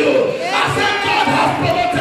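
Loud, fervent shouting by a preacher into a microphone over the hall's PA, his voice held at a raised pitch, with congregation voices joining in.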